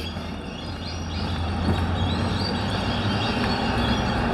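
Outdoor traffic noise, a steady rumble and hiss that slowly grows louder, with a few faint, high bird chirps over it.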